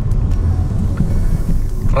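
Steady low rumble of road and drivetrain noise inside the cabin of a moving Mitsubishi Xforce.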